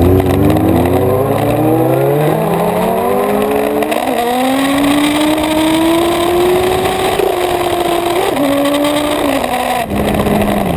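Suzuki GSX-R 1000 inline-four engine accelerating hard, its revs climbing steadily for the first few seconds and then holding high. The revs drop in two steps near the end, over a constant rush of wind on the microphone.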